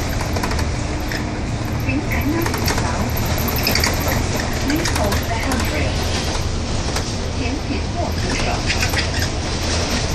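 Upper deck of a double-decker bus on the move: a steady low engine and road rumble, with scattered rattles and clicks from the bodywork and fittings.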